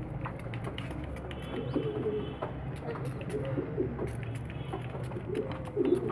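Pigeons cooing faintly with a wavering, repeated coo over a steady low hum.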